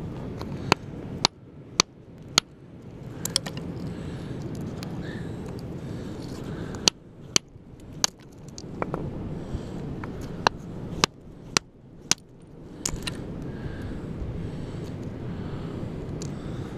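Hammer striking a concretion, a rock nodule, again and again to crack it open: a dozen or so sharp knocks at irregular intervals over a steady low background noise.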